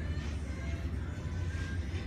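Background music with a steady, strong low bass.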